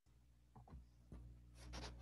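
Near silence: faint steady low hum from an open microphone, with a few soft clicks and rustles, a little louder near the end.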